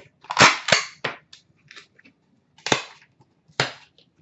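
Hard cardboard card boxes and cards being handled and set down on a glass counter: a run of sharp, irregular clacks and knocks, the loudest about half a second in.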